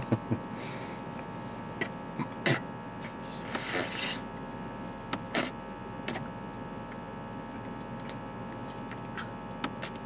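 A man drinking from a large bottle, with a few scattered quiet gulps and swallows over a steady hum inside a car cabin.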